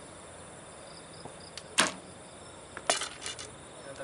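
A recurve bow is shot: one sharp, loud snap of the string and limbs at release, about two seconds in. About a second later comes a quick cluster of several sharper, quieter clacks.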